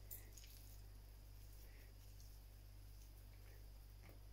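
Near silence: room tone with a low steady hum, and faint soft crumbling as feta cheese is broken up by hand into a mixing bowl of batter.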